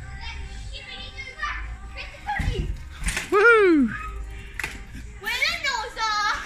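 Young children's voices calling out, with one long whoop about three seconds in that rises and then falls in pitch. Under them is a low rumble.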